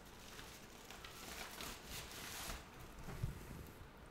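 Packaging rustling and crinkling as it is handled and unwrapped by hand, with a soft bump a little after three seconds in.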